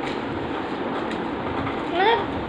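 Steady rushing background noise, with a couple of faint clicks as a small gift box is handled.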